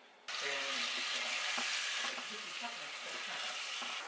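Food sizzling in a hot frying pan on a gas hob. It starts suddenly about a third of a second in and carries on as a steady loud hiss.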